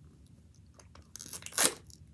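Plastic film being peeled and torn off a Mini Brands capsule ball: small crackles, then one sharp crinkling rip about one and a half seconds in.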